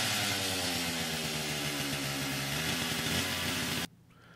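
Chainsaw sound effect: a two-stroke saw engine running steadily at high revs, then cutting off suddenly near the end.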